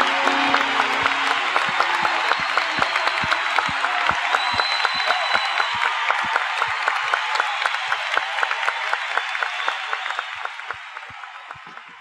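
Live concert audience applauding and cheering, with the clapping in a steady unison rhythm, as the band's last held notes die away in the first few seconds. A whistle sounds about five seconds in, and the whole sound fades down toward the end.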